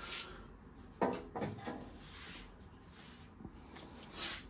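Faint rustling and handling noise, with a brief low murmur of voice about a second in and a couple of soft clicks near the end.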